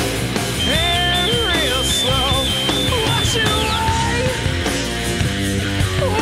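Rock song playing: distorted electric guitar over bass and drums, with bending melodic lines and a high two-note alternating tone through the first few seconds.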